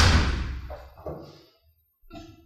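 A door slammed shut: one loud bang at the start that rings on in the room for about a second and a half before dying away.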